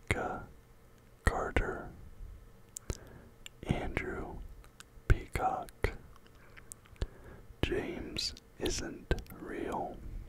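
A man whispering close to the microphone, with small mouth clicks between the words.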